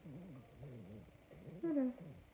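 Yellow Labrador retriever making low, wavering grumbling vocal sounds, then a short, louder whine that falls in pitch near the end.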